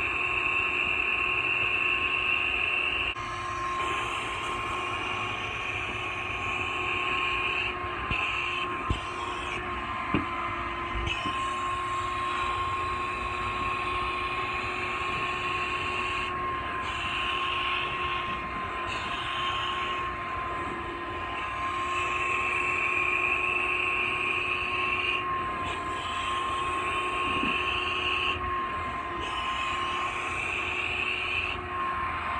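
A shop-vac-powered upholstery extractor running steadily with a high motor whine while its clear hand tool is drawn across a wet fabric couch cushion, sucking up cleaning solution. A hissing rush of air and water rises and falls every few seconds as the tool is pressed and lifted, with a couple of sharp clicks about nine and ten seconds in.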